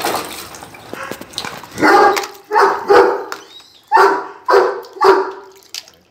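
Fila Brasileiro barking, six loud barks in two groups of three. The dog is agitated at being tied up.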